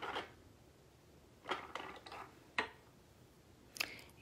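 Light metal clicks and taps from hand-stamping tools, steel letter stamps handled and set down around a steel bench block. There is one click at the start, a short cluster about a second and a half in, a sharper click soon after, and another near the end.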